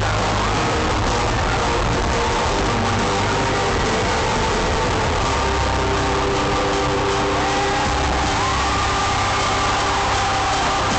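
Live hip-hop concert music from the arena sound system, loud with heavy bass, and sustained higher notes that glide up and down above it near the end.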